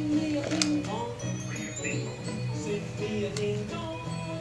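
A simple electronic tune played through a talking Elmo toy's small speaker, a melody of short held notes stepping up and down.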